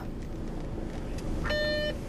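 Steady low rumble of a car's interior while driving, with one short electronic beep about one and a half seconds in, lasting under half a second.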